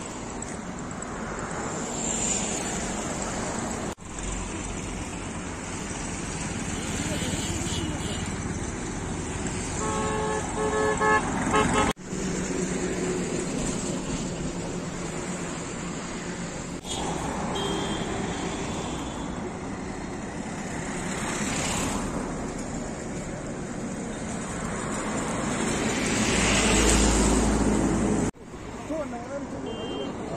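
Road traffic going past, with vehicles swelling by now and then, and a vehicle horn giving several short toots about ten seconds in.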